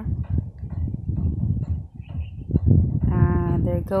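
Wind buffeting a phone microphone outdoors: an uneven low rumble that surges about two and a half seconds in, followed near the end by a short held vocal tone.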